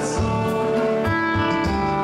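A live blues band playing electric guitars, bass and drums, with held guitar notes over a steady drum beat and no singing.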